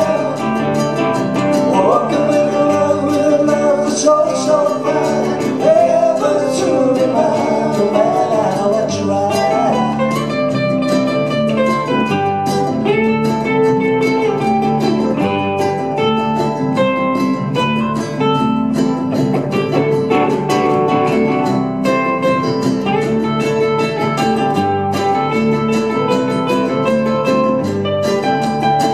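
Ukulele trio playing live, strummed and picked ukuleles through small amplifiers, with two men singing together for roughly the first ten seconds. After that the voices stop and the ukuleles carry on alone in an instrumental break.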